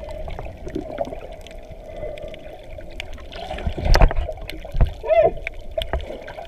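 Heard underwater: a steady hum from a boat engine carried through the water, with low water rumble. A thump with splashing comes about four seconds in, and another just before five.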